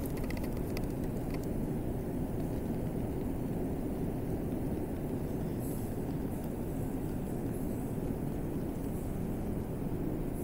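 Steady low rumble of background room noise, with a few faint ticks in the first second or so.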